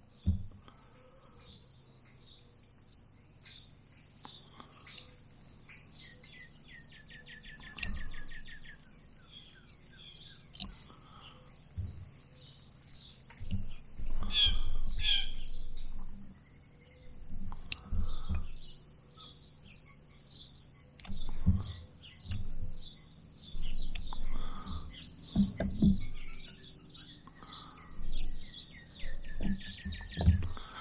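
Birds chirping and calling, with a rapid trill about three seconds in and a louder flurry of calls around halfway through. Scattered soft knocks from hand tools and wood being handled sound underneath.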